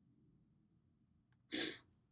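A single short, sharp sniff through the nose about one and a half seconds in, in an otherwise near-silent room.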